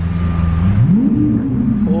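Lamborghini sports car engine running with a deep, steady idle, blipped once about a second in so the pitch rises and falls back.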